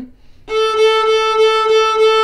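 Violin playing one long, steady bowed note that starts about half a second in. The bow is drawn with the wrist and knuckles held high, a stiff bow hold.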